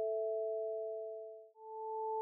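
Two pure sine-wave tones sounding together, the note A and the E a perfect fifth above it, fading out about one and a half seconds in. Then the A returns with the A an octave above it, fading in.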